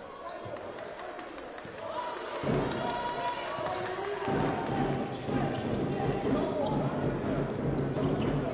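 Basketball being dribbled on a hardwood court: a steady run of sharp bounces starting about a second and a half in.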